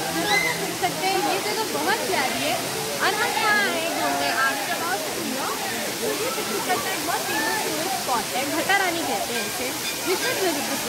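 Steady rush of a waterfall, with the chatter of many people's voices over it.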